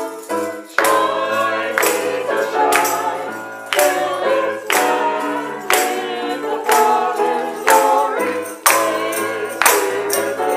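Small church choir singing an upbeat song in parts over instrumental accompaniment, with a sharp percussive beat about once a second.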